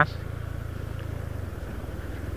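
Steady low drone of a vehicle's engine and tyres on the road while heading down a long, steep hill.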